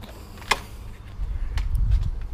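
A motorhome's entry door swinging open: one sharp click about half a second in, then a few faint ticks over a low rumble on the microphone.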